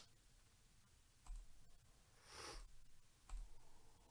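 Near silence in a small room, with two faint sharp clicks about two seconds apart and a brief soft rustle between them.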